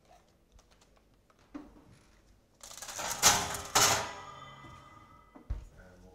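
Metal baking tin and oven shelf clattering as a tray of brownie batter is put into the oven: two sharp metallic knocks half a second apart with a ringing tail, then a dull thump near the end.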